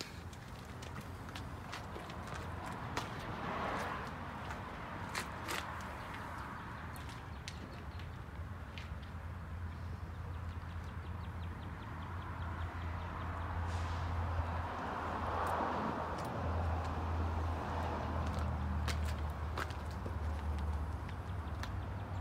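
Footsteps on a gravel lot, with scattered short scuffs and clicks, over a steady low hum that grows a little stronger in the second half.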